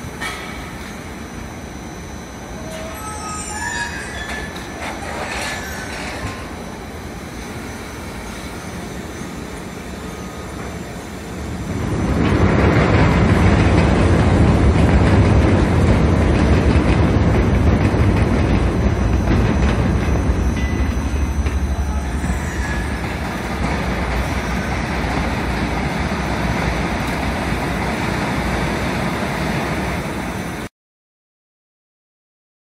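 Gypsum board production line running: the steady rumble and clatter of roller conveyors carrying plasterboard, with a few short high squeaks in the first several seconds. The machine noise grows much louder about twelve seconds in and eases slightly near the end.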